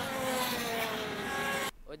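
X30 two-stroke kart engine at high revs passing by, its note falling steadily in pitch as it draws away. It is cut off abruptly near the end.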